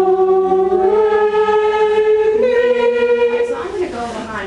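A group of voices singing three held notes that step upward, each about a second long, and stopping shortly before the end. This fits the class singing the G–A–B (do–re–mi) pitches they have just learned to finger on the recorder.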